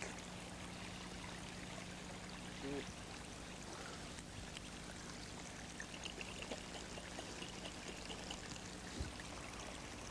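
Faint steady hiss with a low hum. In the second half come faint light sloshes and ticks of water being shaken in a small glass jar to dissolve potassium permanganate crystals.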